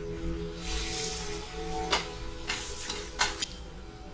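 Crêpes Suzette syrup of butter and orange sizzling as it reduces in a pan while being stirred with a spoon, with a few sharp clinks of the spoon against the pan in the second half.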